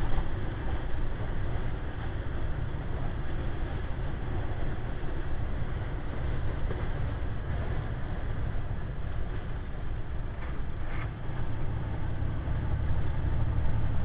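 Inside a semi-truck's cab at highway speed: the diesel engine's steady low drone mixed with road noise, unchanging throughout.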